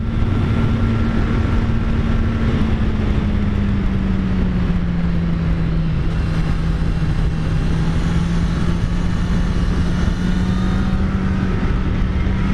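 Kawasaki Z900's inline-four engine running at a steady cruise, with wind rushing over the microphone. Its pitch eases down slightly a few seconds in and creeps back up near the end.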